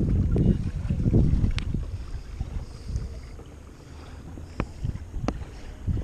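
Wind rumbling on a handheld action camera's microphone, along with handling noise, heaviest in the first second or so and then easing, with a few sharp ticks scattered through.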